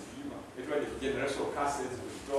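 Speech only: a man's voice preaching.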